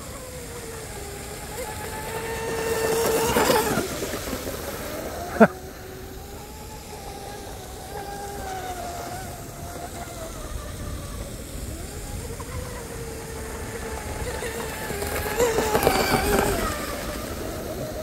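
Electric RC hydroplane with a Leopard 4082 1600kv brushless motor running laps near full throttle: a high motor whine that wavers up and down in pitch through the turns and grows louder as the boat passes close, a few seconds in and again near the end. A single sharp click about five seconds in.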